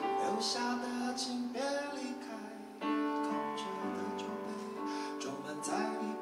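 A man singing a slow original song, accompanying himself on a strummed acoustic guitar, with a fresh strum about three seconds in.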